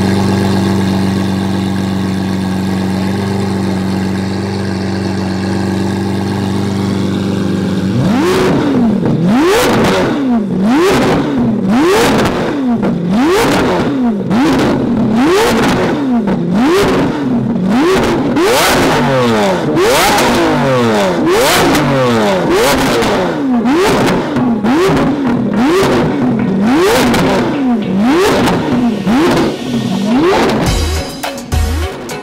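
Straight-piped Lamborghini Aventador's V12 idling steadily, then from about eight seconds in revved over and over, roughly once a second, each rev climbing and dropping quickly. Very loud.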